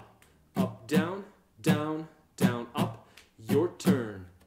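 Acoustic guitar strummed with the strings muted in the basic rock strum pattern, giving short, scratchy percussive strokes. A voice calls out each stroke in time with it: down, down, up, up, down.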